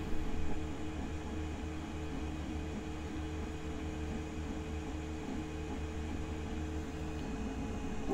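Geeetech Giantarm D200 3D printer running a print: steady fan hum with the stepper motors whirring as the print head moves.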